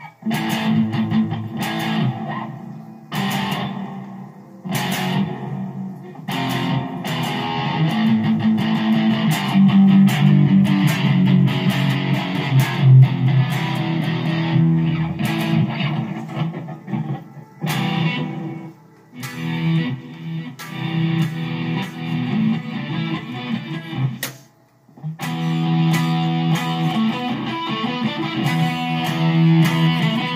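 Electric guitar playing riffs with short breaks, stopping briefly about 25 seconds in before starting again.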